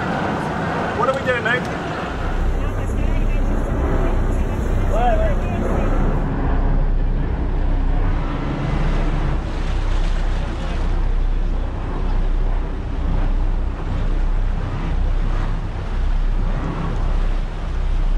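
A boat engine idling with a steady low hum, with indistinct voices over it in the first few seconds.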